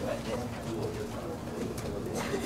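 Faint, indistinct voices and room murmur in a meeting hall over a steady low hum, with no clear speech.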